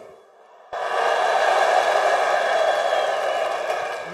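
Large crowd cheering and shouting, starting abruptly after a brief silence about three-quarters of a second in and holding steady, easing slightly near the end.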